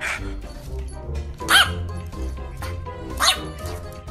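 Two short barks from a French bulldog, about a second and a half apart, over background music.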